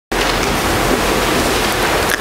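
Loud, steady hiss with no tone or rhythm in it: noise on the recording's audio feed.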